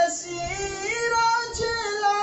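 A man singing a devotional song into a microphone in a high voice, drawing out long wavering melismatic notes.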